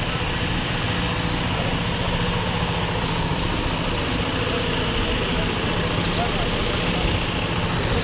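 Large diesel coach engine idling steadily close by, a constant low hum with no revving.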